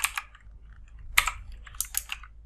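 Computer keyboard keystrokes: a few quick keys at the start, a pause, a single sharper key strike just after one second, then a short run of keys near the end.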